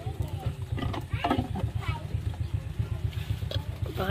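Voices talking over a low, fast, even throbbing.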